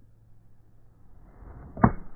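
Golf iron swung through the downswing with a building swish, then one sharp crack as the clubface strikes the ball near the end.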